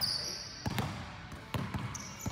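A basketball bouncing on an indoor court tile floor: several irregular thuds.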